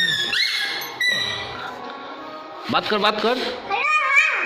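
A toddler's high-pitched voice in short squeals and sing-song babble, several calls that glide up in pitch, one near the end wavering like a giggle.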